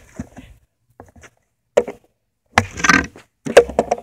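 Kryptonics skateboard knocking against asphalt in a few sharp thumps, one about two seconds in and another near the end, with a short clatter just before the last. The board is wobbly and making thumping noises.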